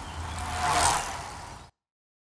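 Outro sound effect: a rushing whoosh that swells and fades over a low steady hum, peaking just under a second in, then cutting off suddenly shortly before the end.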